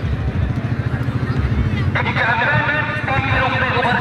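Low rumble on the microphone with crowd murmur from the spectators. About halfway in, a voice starts talking and carries on.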